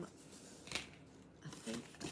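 Scissors cutting through a paper packing slip, a short quiet snip about three quarters of a second in.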